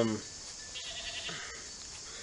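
A man's long, level-pitched 'um' that ends just after the start, then faint steady background hiss with a brief faint high trill about a second in.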